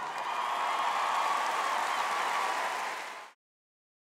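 Large arena audience applauding, an even wash of clapping that cuts off suddenly about three seconds in.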